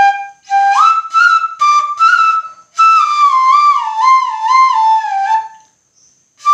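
Bamboo suling flute in G playing a melody phrase: a few short notes, then a longer line that steps downward with small wavering turns between notes, breaking off shortly before the end.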